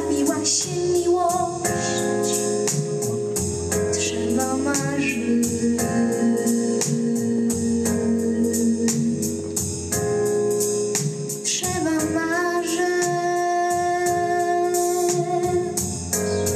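A teenage girl singing long, held notes into a handheld microphone over a backing track with a steady beat.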